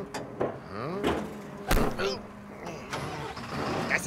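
Garbage truck working: its engine runs with a steady hum and repeated rising whines, and one heavy clank comes about two seconds in.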